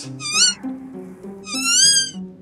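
A baby triceratops puppet's cries: two high, warbling squeaks, a short one near the start and a longer one near the end, over soft background music.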